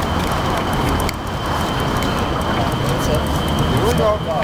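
City street noise: traffic rumble with people talking in the background, and a faint steady high whine throughout.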